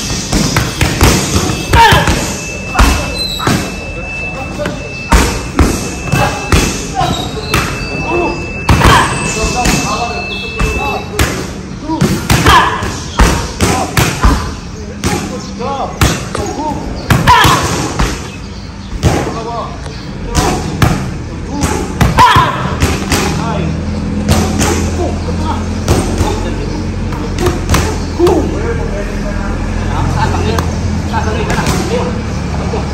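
Boxing gloves striking focus mitts in quick combinations: sharp smacks at irregular spacing, some in fast runs of two or three.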